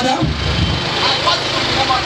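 A man's voice finishing a word, then voices over a steady low rumble like an engine or traffic running in the background.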